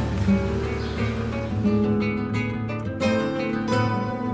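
Background music: acoustic guitar playing plucked notes and chords.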